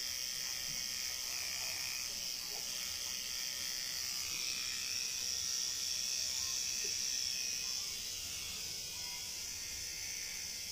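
Electric tattoo machine running with a steady high buzz, a little quieter near the end.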